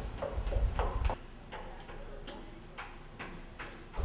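Footsteps coming down a flight of stairs, about two steps a second, each a sharp tap.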